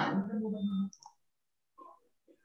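A short voice sound over a video call, under a second long, with a sharp click at its start.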